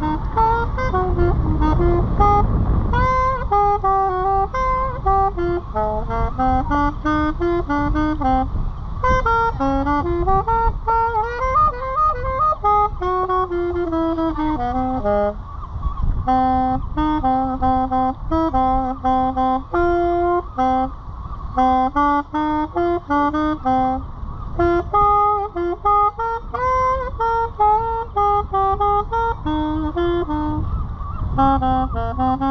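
A saxophone plays a melody of stepping, sustained notes, with a low rumble underneath that is heaviest in the first three seconds.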